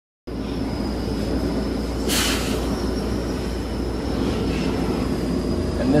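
Steady workshop machine noise cutting in abruptly: a low rumble with a thin, steady high whine, and a brief hiss about two seconds in.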